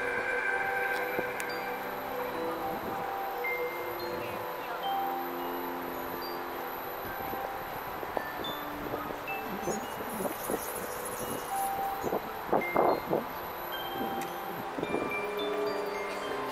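Twinkling chime tones: short single notes at many different pitches, scattered and overlapping, as the sound effect of a sparkling tree-light show. Voices from the crowd come in during the second half, loudest a little before the end.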